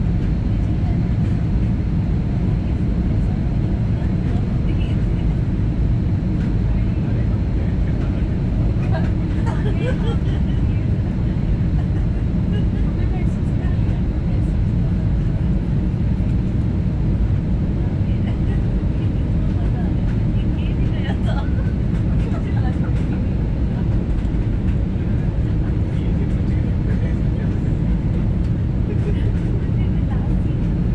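Steady low roar inside the cabin of a jet airliner on final approach: engines and airflow heard from a window seat over the wing. Faint passenger voices come through now and then.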